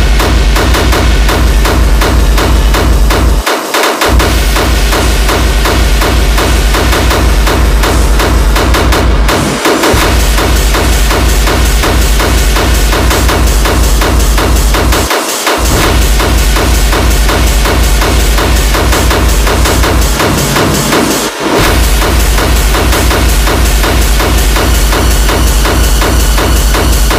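Hard techno music: a loud, fast, steady kick drum under dense synth layers. The kick and bass drop out for a moment four times before coming back in.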